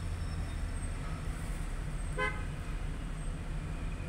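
A single short vehicle-horn toot a little over two seconds in, over a steady low rumble of engine and traffic heard from inside a car.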